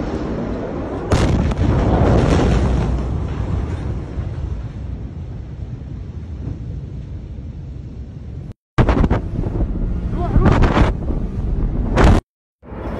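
Blast of the Beirut port explosion reaching a phone microphone: a sudden loud boom about a second in, then a heavy rumble that fades over several seconds. After a sudden cut, a second stretch of loud bangs and rumbling comes from another recording.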